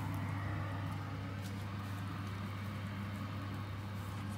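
Steady low electrical hum from a glass-top electric stovetop that is switched on, with no marked changes.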